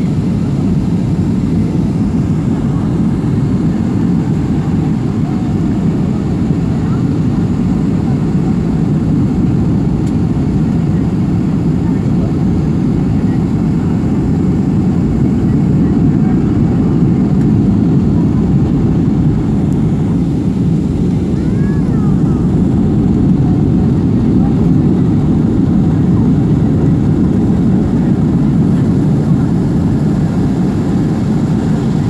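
Steady cabin noise inside an American Airlines Boeing 757 on final approach: the rumble of engines and airflow, a little louder from about halfway.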